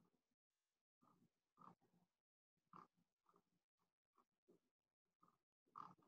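Near silence, with faint, irregular short sounds every half second or so in the background.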